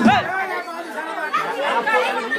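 Several people's voices chattering and calling over each other. Loud music with a deep beat stops just at the start.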